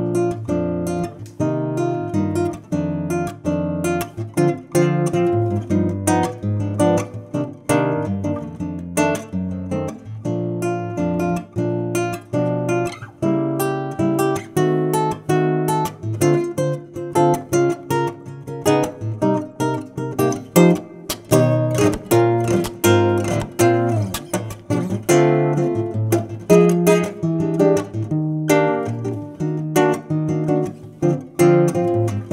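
Cort CEC1 nylon-string classical guitar played fingerstyle: a continuous run of plucked notes and chords.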